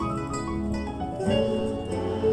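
Instrumental music with a plucked guitar, the accompaniment of a hymn playing on between sung lines.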